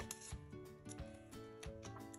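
Quiet background music with a few faint clicks and rustles of a paper sticker being peeled off and handled.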